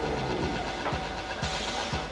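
Loud electronic dance music with a steady, deep kick drum beating about twice a second over a low bass drone, with a brighter hiss near the end.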